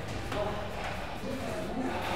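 Footsteps of a runner climbing an open-tread spiral staircase, with faint voices in the background.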